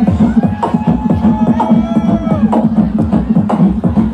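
Live beatboxing through a handheld microphone and PA: a fast, driving pattern of vocal kick, snare and click sounds over a steady hummed bass note, with gliding vocal tones sliding up and down over the beat about halfway through.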